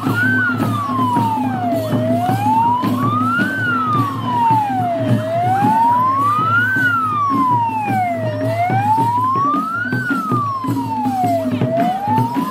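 Ambulance siren wailing in a slow, even rise and fall, about four sweeps up and down, over the irregular beating of traditional hand drums.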